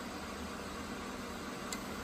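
Steady, even whirring hiss of the Creality K1 3D printer's fans running while its hotend sits at temperature.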